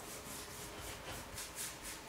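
Paintbrush spreading linseed-oil-based finish over a stained solid-ash board: faint, quick back-and-forth swishing strokes, about four a second.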